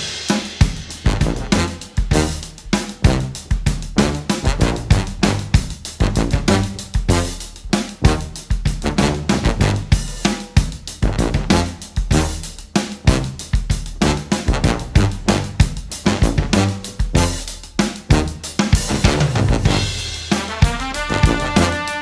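Brass band playing an up-tempo tune with a driving drum-kit groove of bass drum, snare and cymbals under trombones and trumpets; held horn lines come forward near the end.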